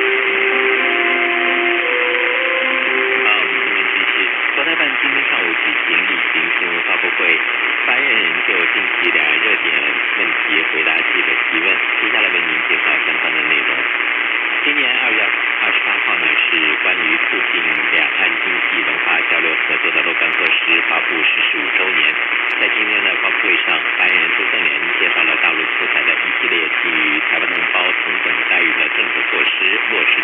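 Medium-wave AM broadcast received on a portable radio (585 kHz, Southeast Broadcasting Company), with heavy static and hiss and the audio cut off above a few kilohertz. A short run of musical notes plays at the start, then a voice talks, half buried under the noise, with a faint steady whistle behind it.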